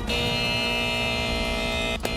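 A TV programme's theme-music ident ending on one long chord that is held steadily and evenly, without a break.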